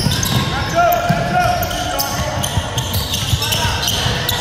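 Basketball game in a gym: the ball bouncing on a hardwood court, sneakers squeaking briefly about a second in, and indistinct voices of players and spectators.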